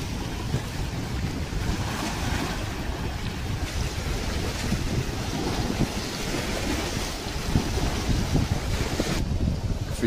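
Wind buffeting an outdoor microphone beside choppy lake water: a steady, rough rush of noise with a low rumble that thins out in the upper range near the end.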